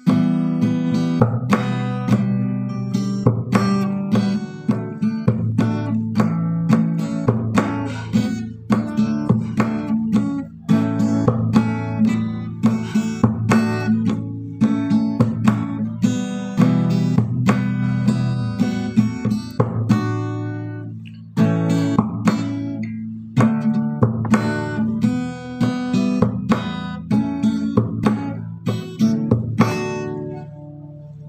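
Acoustic guitar music: strummed chords in a steady rhythm.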